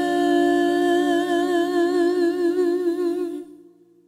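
A singer holds the last note of a worship song: one steady pitch with a widening vibrato, which cuts off about three and a half seconds in and fades away to silence.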